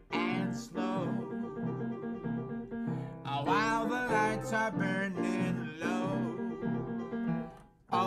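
A man singing a slow jazz song over instrumental chords. The voice comes in about three seconds in with a wavering melody, and the music drops away briefly just before the end.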